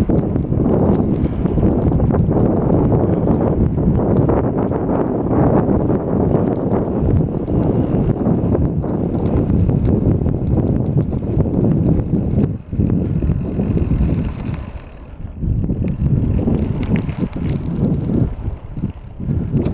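Wind rushing over the microphone of a camera riding on a moving bicycle, with tyre noise on rough asphalt. It is loud and steady, dropping off briefly about two-thirds of the way through.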